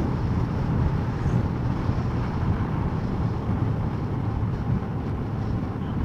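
Small motorcycle riding steadily along a concrete road: the engine and rushing wind and road noise on the microphone make an even, unbroken sound.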